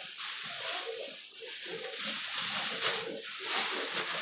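Thin plastic shopping bag rustling and crinkling as hands rummage through it, the rustle swelling and easing several times.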